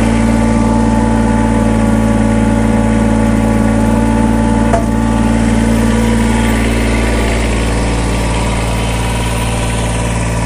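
Kubota BX2380's three-cylinder diesel engine idling steadily, with a single click about halfway through.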